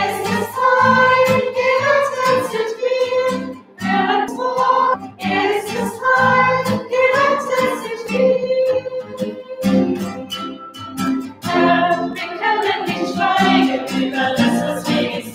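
A small group of mostly women's voices singing a German hymn in unison, accompanied by a strummed acoustic guitar.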